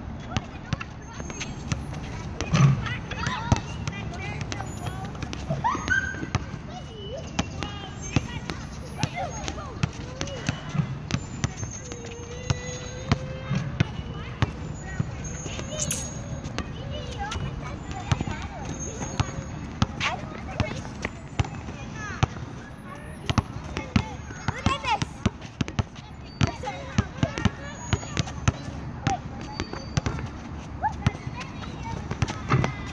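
Basketballs bouncing and thudding on an outdoor asphalt court, short sharp knocks scattered irregularly throughout, with children's voices calling out now and then.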